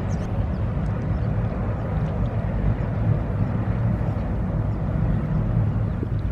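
Harbour tug's diesel engines running with a steady low rumble.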